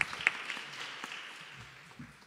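Applause from a small audience dying away. A few sharp claps stand out in the first half-second, then the clapping thins and fades.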